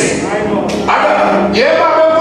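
A man preaching loudly into a microphone, his voice breaking off briefly about midway and coming back on a rising pitch.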